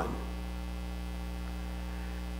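Steady electrical mains hum: an even low buzz with a stack of overtones, unchanging throughout.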